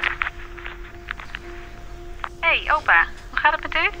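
A woman's voice heard through a phone earpiece, answering the call about two and a half seconds in, over a steady held music tone.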